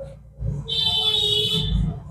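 A red felt-tip marker squeaking on paper while colouring in a shape: one high, drawn-out squeak lasting about a second, starting just under a second in.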